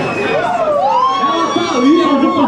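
A siren-like tone that glides up about two-thirds of a second in, then holds steady for over a second, over a background of voices.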